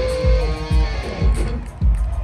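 Electric guitar played live through an amplifier, a held note bending slightly down, over a steady drum beat thumping about twice a second.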